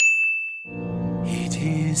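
A single bright bell-like ding sound effect, struck once and ringing out for well under a second, marking the on-screen win counter ticking up. Then music fades in.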